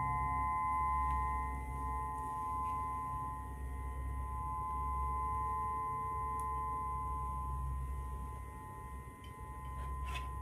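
Crystal singing bowls ringing together, several steady overlapping tones held without a break. One lower tone fades out in the second half.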